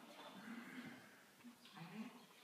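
Faint, indistinct voices murmuring, a few short soft utterances with no clear words.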